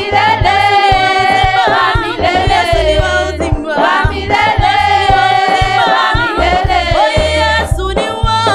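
Mainly female vocal group singing in harmony, with long held notes over a low bass line.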